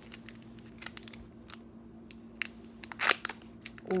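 Foil Pokémon booster pack being torn open and handled: scattered crinkles and rustles, with a louder tearing burst about three seconds in. A faint steady hum sits underneath.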